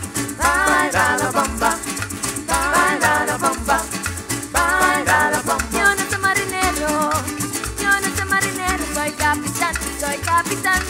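Live parang band playing: strummed cuatro and guitar with maracas shaking steadily over a bass pulse about twice a second, and a wavering melody line in short phrases.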